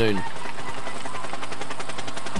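Steady engine drone of race vehicles under the broadcast, as the last syllable of a commentator's word fades out at the start.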